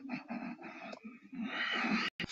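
A person's voice making wordless, breathy vocal sounds, with a short break about a second in.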